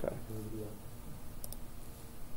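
A brief low murmured voice just after the start, then a faint short click about one and a half seconds in: a computer mouse click changing the displayed workbook page.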